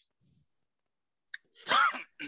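A person sneezing once near the end, heard over a video call, after a near-silent stretch broken by a faint click.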